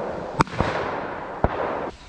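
Three shotgun shots fired at released pheasants: two in quick succession about half a second in, a third about a second later, each trailing off in a long rolling echo.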